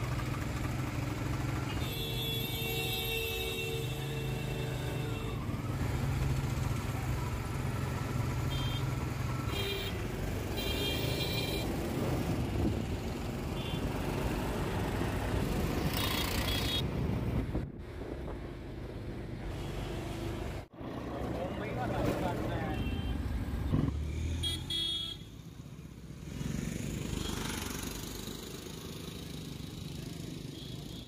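Indian street traffic: engines and road noise running steadily, with several vehicle horn honks, one long blast a couple of seconds in and shorter ones later. Part of it is heard from inside a moving auto-rickshaw.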